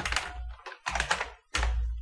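Typing on a computer keyboard: quick runs of key clicks, broken by two short pauses.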